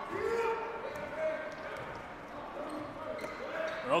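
A basketball being dribbled on a hardwood gym court, with faint shouts and calls from players and the crowd.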